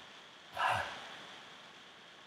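A person's single short, breathy exhale or sigh about half a second in, the release of breath after coming up from a held wall sit.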